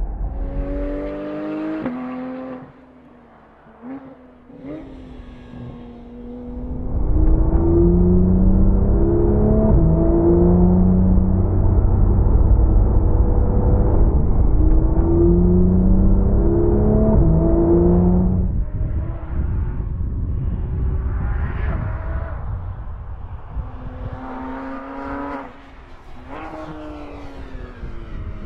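Porsche 911 GT3 RS's naturally aspirated flat-six revving hard, its pitch climbing and dropping back with each gear change. A louder, steadier stretch with a deep low rumble fills the middle.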